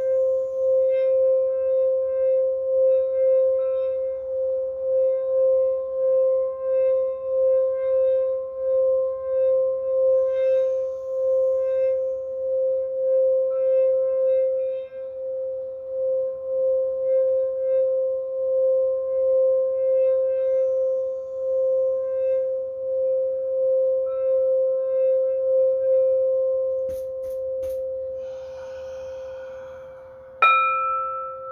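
Singing bowl rubbed around its rim with a mallet, singing one steady tone that pulses about twice a second. Near the end the tone weakens and a few clicks and a breathy hiss come in.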